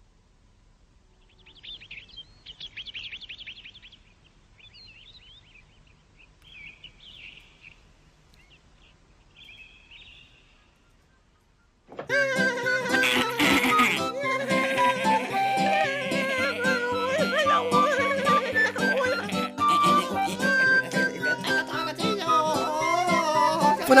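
Faint, scattered bird chirps for the first ten seconds or so; then, about halfway through, cartoon background music starts suddenly and plays on, a melody with accompaniment that is much louder than the chirps.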